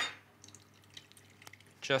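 Canned coconut milk poured into a stainless steel saucepan: a short sharp sound at the start, then a faint trickle with small drips.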